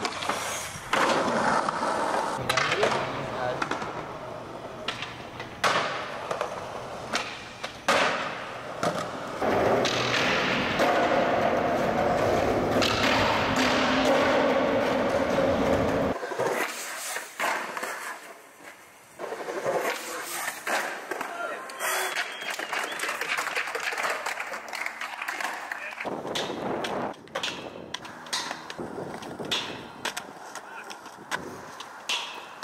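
Skateboard wheels rolling on concrete, broken by repeated sharp clacks of the board popping and landing, across several separate clips.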